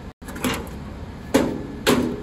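Clacks from a scissor lift's platform control box and its mount as the box is handled and tipped down: a lighter knock about half a second in, then two loud, sharp clacks half a second apart near the end, each with a short ring.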